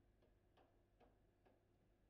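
Faint clicks of a foosball ball being tapped between the figures of a midfield rod, about two a second.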